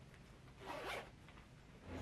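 A faint, short zip of a fabric shoulder bag's zipper, one pull lasting about half a second.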